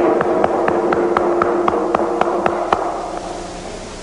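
Atabaque hand drums struck in an even pattern, sharp strokes about four a second over a steady ringing tone. The strokes stop a little under three seconds in and the sound fades away.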